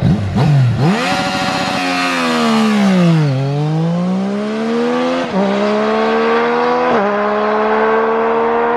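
Yamaha MT-09 inline-three engine accelerating hard from a standing start, its pitch climbing through the revs. Two upshifts come about five and seven seconds in, each a sudden drop in pitch followed by a steady climb as the bike pulls away.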